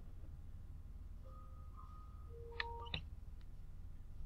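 Quiet room hum with a few faint, short steady tones, and two or three computer mouse clicks between two and a half and three seconds in as a video is started on the computer.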